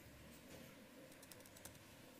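Near silence with a few faint laptop keyboard clicks bunched about a second and a half in, as keys are pressed to cycle between open applications.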